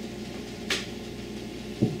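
A short sniff at the mouth of an opened plastic soda bottle, about two-thirds of a second in, then a dull knock near the end as a drinking glass is set down on the table.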